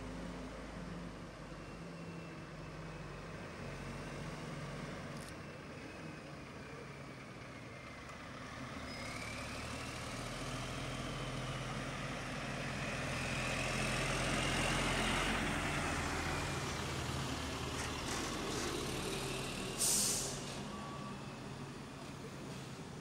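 Heavy lorry's diesel engine running as it pulls slowly past towing trailers, getting louder to a peak about two-thirds through, with a faint high whine rising and falling. Near the end a short, sharp air-brake hiss.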